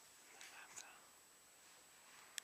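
Near silence: faint room tone with a thin steady high tone and a couple of faint soft sounds in the first second.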